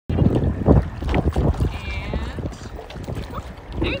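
Wind buffeting the microphone over water sloshing and splashing around a person wading in a lake, loudest in the first second and a half.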